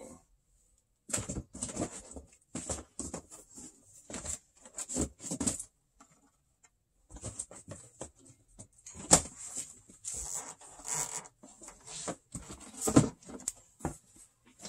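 Shrink-wrapped vinyl record jackets being handled and slid out of cardboard shipping boxes: an irregular run of rustles, slides and light knocks. There is a short pause about halfway, and two sharper knocks come in the second half.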